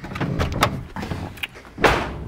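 Driver's door of a 1999 Honda Civic being unlatched and opened from inside: a run of small clicks and knocks, then one loud thump near the end.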